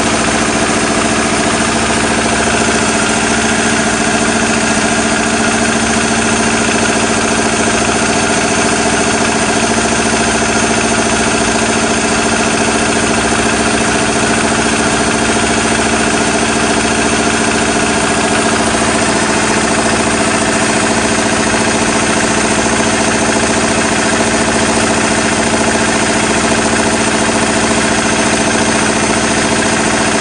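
Test engine idling steadily at about 900 rpm on conventional throttle-butterfly control, with an even, unchanging note.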